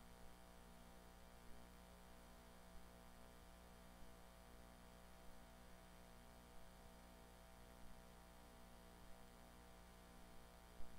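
Near silence: room tone carrying a steady electrical mains hum, with a faint tick about every second and a quarter.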